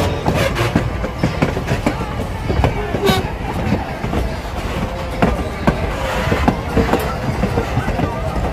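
Strasburg Rail Road passenger coaches and open-air cars rolling past close by: a steady low rumble of wheels on rail, with irregular clicks and clacks as the trucks pass over the rail joints.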